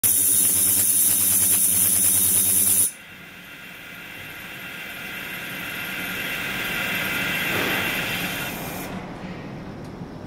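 Ultrasonic cleaning tank buzzing loudly with a high cavitation hiss, then cutting off abruptly about three seconds in, as the ultrasonic output is switched by its controller. A quieter sound follows that swells slowly and then fades.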